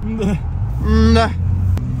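Car engine and road rumble heard inside the cabin, swelling about a second in. Over it comes a short voice sound at the start and a longer drawn-out one.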